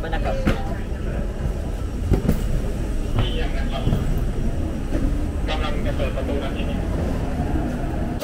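Steady low rumble at an airliner's door and jet bridge, with a few brief, muffled voices.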